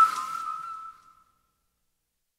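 The last note of the song's whistled hook, held alone after the beat cuts out and fading away within about a second.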